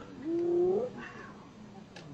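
Drawn-out wailing animal call, rising at first and then held for about half a second, followed by a fainter, higher call.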